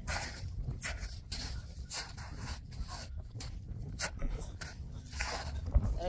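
Footsteps crunching on patchy snow and rocky ground, a rapid, irregular run of short crunches, over a low wind rumble on the microphone.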